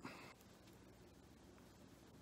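Near silence: room tone, with one short soft rustle at the very start as a cloth snake bag is handled.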